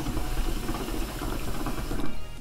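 Hookah bubbling: water gurgling in the glass base as smoke is drawn through the hose in one long, continuous pull.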